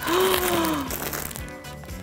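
A woman's drawn-out 'ooh' of delight, one sung-like note falling slowly in pitch for about a second. It is followed by the soft crinkle of plastic-wrapped yarn packs being handled.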